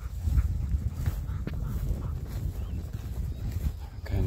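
A bird dog panting close by, over a steady low rumble of wind on the microphone.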